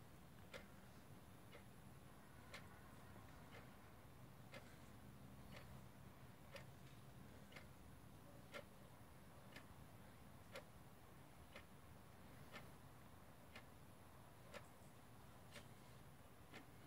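Near silence: room tone with faint, regular ticking, about one tick a second.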